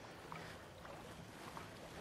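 Faint sloshing and splashing of legs wading through knee-deep water, with a few small irregular splashes over a steady hiss of wind and water.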